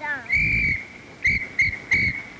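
A whistle blown at one steady high pitch: one longer blast, then three short blasts in quick succession.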